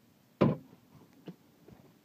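A single sharp knock about half a second in, dying away quickly, then a faint tick about a second later.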